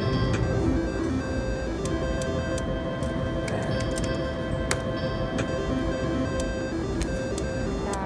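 Sustained electronic tones from a three-reel slot machine as its reels spin, over the steady din of a casino floor. A sharp click comes about four and a half seconds in.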